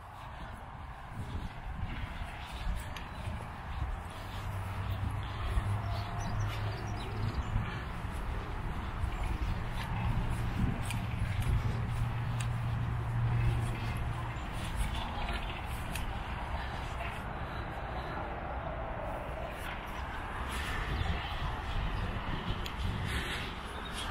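Outdoor ambience while walking along a grassy path: soft footsteps and rustle, with a steady low drone from about four seconds in that fades out about ten seconds later.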